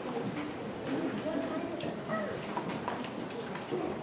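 Low murmur of voices in a room, with scattered footsteps and light knocks.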